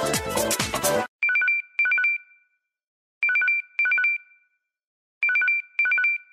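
LG KS360 mobile phone ringtones. An electronic music ringtone cuts off about a second in. After a short gap a trilling ring starts, two short two-note trills in a pair, the pair repeating every two seconds like a classic telephone ring.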